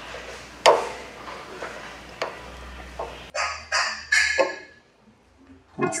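Metal parts of a split conveyor drive shaft knocking and clicking as the two halves are pushed back together by hand. There are a few separate sharp knocks, the loudest under a second in, then a quick run of brighter clinks around three to four seconds in.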